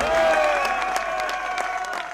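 A crowd applauding, with voices calling out and music carrying on underneath; the clapping dies down near the end.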